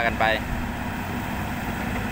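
Caterpillar 320D hydraulic excavator's diesel engine running at a steady speed, a constant low hum.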